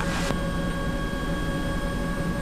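Bell 206B III helicopter cabin noise during a power-off autorotation: the turbine engine at idle gives steady whine tones over the main rotor's low drone and a rush of air.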